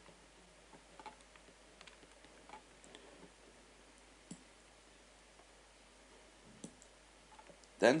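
Faint, scattered computer mouse clicks, a few short isolated ticks spread over several seconds, over low room noise.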